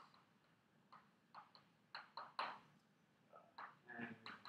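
Chalk writing on a blackboard: an irregular run of faint, short taps and scratches as the chalk strikes and drags across the board.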